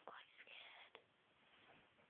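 A faint whisper in a near-silent room, lasting under a second, between two soft clicks about a second apart.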